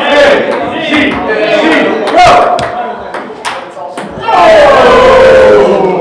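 Voices in a large room with a few sharp taps, then about four seconds in a long, loud yell that falls in pitch and lasts well over a second.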